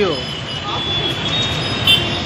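Busy city street traffic: a steady rumble of autorickshaws, motorbikes and a bus passing, with a brief sharp sound near the end.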